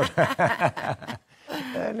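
A man laughing in a quick run of short chuckles.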